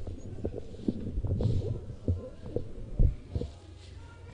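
A run of irregular dull thumps over low rumbling, the loudest about three seconds in.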